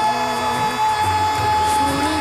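Live stage music starting up: one long high note held steady over a low bass line and band accompaniment, with light percussion ticks.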